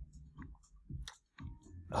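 A few faint, short clicks scattered through a pause between spoken phrases, with the man's speech resuming at the very end.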